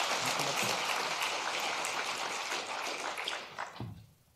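Audience applauding: dense clapping that thins out and stops shortly before the end.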